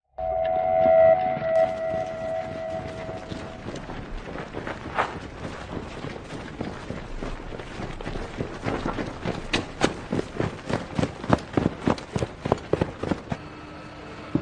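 A siren sounding one steady tone for the first three and a half seconds. After it comes a string of short, sharp knocks that come faster and louder in the second half.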